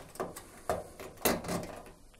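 Plastic drain hose clip pulled off the back of a washing machine by hand, with the corrugated hose knocking against the cabinet: a few short clicks and rattles.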